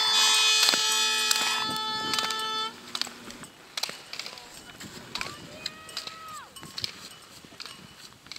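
Slalom gate poles clacking sharply as a ski racer knocks them on the way through the course. For the first few seconds a loud, steady, many-toned horn sound plays over it and cuts off suddenly; after that, voices call out between the clacks.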